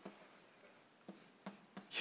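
Faint scratching of a stylus writing words on a digital writing surface, with a few light taps in the second half.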